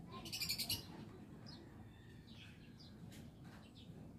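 Birds chirping: a loud quick run of high chirps in the first second, then scattered fainter chirps.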